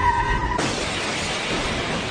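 Car crash sound: a short high squeal, then a steady crashing, shattering noise lasting about a second and a half as the car ploughs through the café's outdoor tables and chairs.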